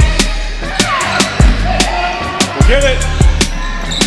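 Basketball play on a hardwood gym floor: sneakers squeaking in short bending chirps, and a ball bouncing with sharp knocks several times.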